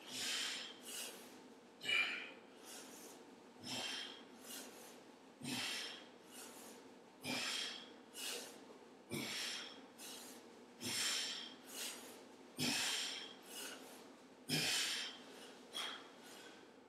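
A man's hard, rhythmic breathing during kettlebell swings: a forceful breath about every two seconds, each followed by a softer one, in time with the swings.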